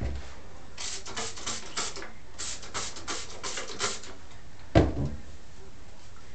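Water spray bottle squirted onto hair: about ten quick hissing sprays in two runs, followed near the end by a single thump.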